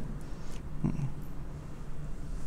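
A pause in speech filled by a steady low electrical hum through the headset microphone's sound system, with one brief faint sound a little under a second in.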